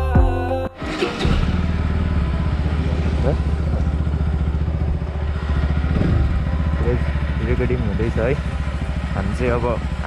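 Bajaj Pulsar NS200's single-cylinder engine running steadily at low revs. It comes in about a second in, as the background music cuts off.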